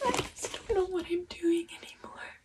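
A young woman crying as she tries to talk: a breathy, high, wavering voice in short broken bursts, with no clear words.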